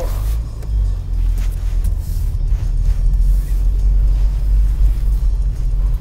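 Low, steady rumble of a car's engine and tyres heard from inside the cabin as the car pulls away from a stop and picks up speed.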